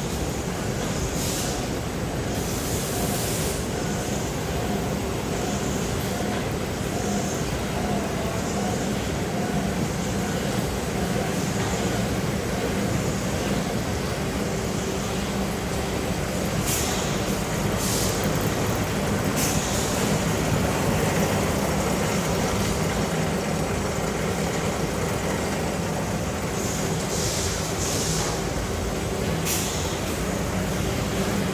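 Hardboard production line machinery running steadily, a constant low hum and rumble, with short hisses now and then.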